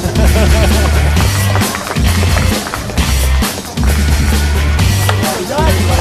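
Loud rock music with a heavy, pulsing bass line and drums.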